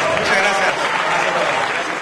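Audience applauding at the end of a song, with a voice heard over the clapping in the first second.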